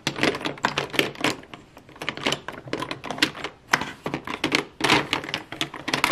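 Plastic lipstick tubes, lip gloss bottles and lip liners clacking against each other as a hand rummages through a plastic makeup bin: a rapid, irregular run of clicks.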